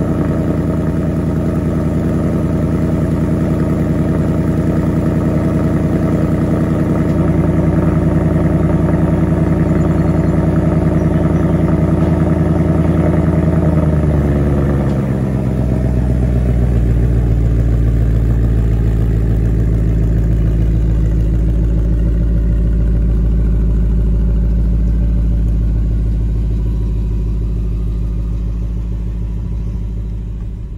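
Ford Mustang GT's 5.0-litre V8 idling through its stock quad-tip exhaust, still cold. The idle steps down to a lower, deeper note about fifteen seconds in, as the high cold-start idle settles.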